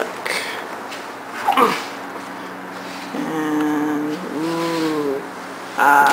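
A built-in refrigerator's door is pulled open, with a short rustle near the start and a louder swish about a second and a half in. Then a voice hums a held note followed by a bending one, for about two seconds.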